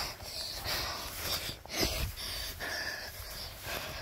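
A person breathing hard in repeated hissy breaths, about two a second, while moving quickly through tall grass, with the grass swishing. There is a low thump about two seconds in.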